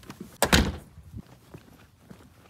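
A door shutting with one sudden thud about half a second in, followed by a few faint knocks.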